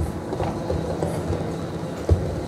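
Microphone handling noise: low rumbling rubs and small knocks as a lectern microphone on its stand is gripped and adjusted by hand.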